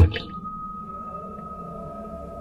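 A steady held tone from a background drone, a single high note sustained over a faint low hum, with nothing else changing.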